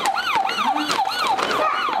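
Electronic toy siren wailing in quick, repeated falling sweeps, about four a second.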